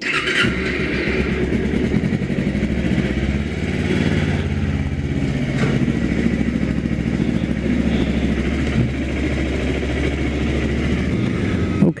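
Kawasaki Ninja 250R's parallel-twin engine starting up, catching at once and settling into a steady idle. It is quiet, running through the stock exhaust.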